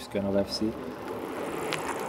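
A bicycle riding along a gravel path and coming closer, the sound of its tyres on the gravel growing steadily louder. A brief spoken sound comes just at the start.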